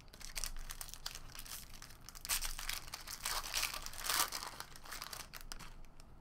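Foil wrapper of a trading-card pack being torn and crumpled by hand: a run of crinkling, loudest a little after two seconds in and again around four seconds in, dying away near the end.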